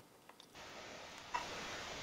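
Dead air, then a faint steady line hiss comes up about half a second in, with a single click a little over a second in: a call-in telephone line being opened on the studio mixer.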